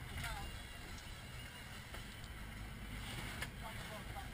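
Steady low rumble of a sportfishing boat under way: the engine running, with wind and water noise along the hull. Faint voices come through briefly near the start and again near the end.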